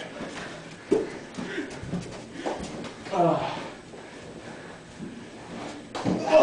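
Indistinct voices of several men calling out in short bursts, with no clear words; the loudest call comes about a second in.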